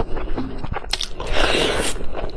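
Close-up eating sounds: a bite into a saucy piece of food, then chewing, with a few sharp clicks about a second in and a louder, noisier stretch in the second half.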